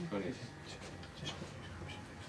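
A few words of speech at the very start, then low murmuring with faint rustling and a few light taps as people move about a small room.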